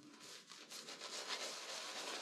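Synthetic shaving brush (Omega Evo Titano V2) swirled over a lathered cheek and chin: a faint, quick, wet rubbing that grows a little louder after the first half second.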